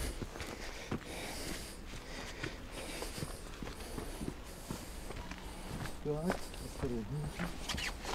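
Footsteps on a rubble-strewn path of gravel and broken concrete, irregular steps, with a short quiet voice briefly about two-thirds of the way in.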